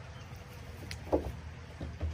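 Handling of a threaded pipe fitting at a hole in a plastic barrel: one sharp click about a second in, followed by a short dull knock, over a steady low background rumble.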